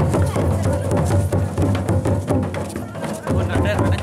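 Folk dance music with drums beating, and voices heard over the drumming.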